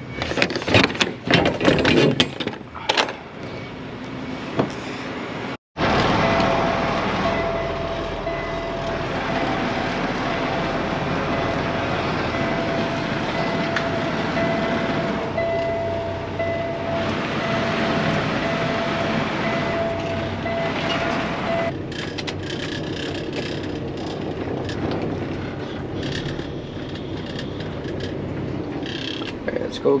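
A few knocks and clunks, then the steady running noise of a semi truck's engine heard from inside the cab, with a faint steady whine through the middle.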